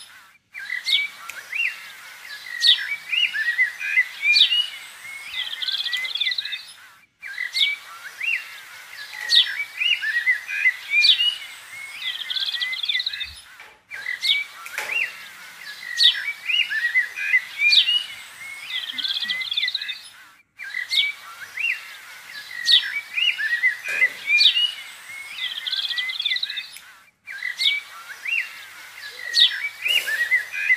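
Birds chirping and twittering in quick, overlapping calls, in a recording that loops about every seven seconds, with a brief dropout to silence at each repeat.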